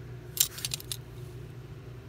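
A short cluster of light clicks and clinks, about half a second in, from a hard plastic toy rocket being handled and turned in the fingers, over a low steady hum.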